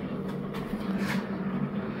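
A steady low hum, with a brief faint click about a second in.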